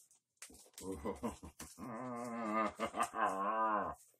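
A man's deep, growly, drawn-out laugh, wavering in pitch. It comes in short pulses about a second in, then in two long held stretches.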